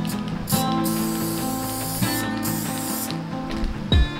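Aerosol can of Loctite spray adhesive hissing in a few bursts over about two and a half seconds, over background music. A single thump just before the end.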